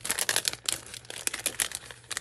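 Clear plastic cellophane bag crinkling in the hands as a pack of paper die cuts is handled and opened: an irregular run of quick crackles.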